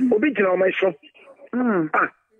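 Speech only: a person talking in two short phrases with a brief pause about a second in.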